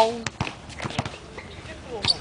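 A voice trails off at the start, then low outdoor background with faint voices and a few scattered light taps.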